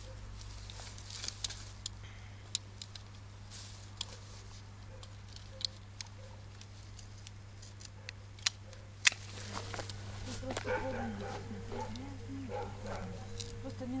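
Secateurs snipping thin, dry branches: a series of sharp separate clicks, the loudest about nine seconds in. In the last few seconds a faint wavering animal call runs in the background.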